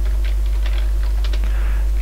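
Computer keyboard keys clicking in quick, irregular strokes as text is typed, over a steady low hum.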